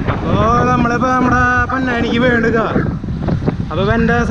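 Wind buffeting the microphone of a camera on a moving bicycle, with road rumble underneath. Over it, from just after the start to about three seconds in, a person's voice talks, the words unclear, and the voice starts again near the end.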